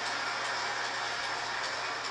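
A large auditorium audience applauding: steady, dense clapping.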